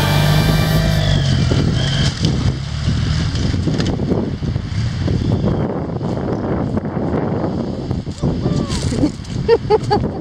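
A BMW F700GS motorcycle's parallel-twin engine runs as the bike pulls away over a sandy track, under heavy wind noise on the microphone. Background music fades out in the first second, and a few short voices come in near the end.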